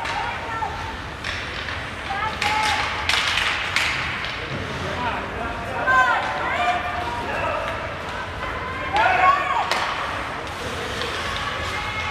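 Ice hockey rink during play: sharp knocks of sticks and puck against the boards and ice, with distant shouting voices from players and spectators rising and falling, over the hall's steady background noise.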